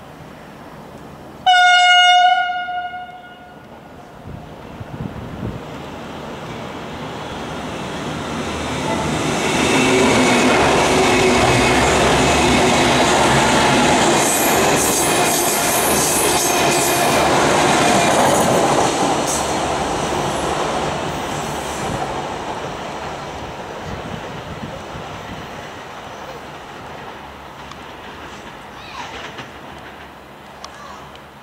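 V/Line VLocity diesel multiple unit sounding one short horn blast, then running through at speed: its diesel engines and wheels on the rails build to a loud pass with a run of sharp clicks over the track, and slowly fade away.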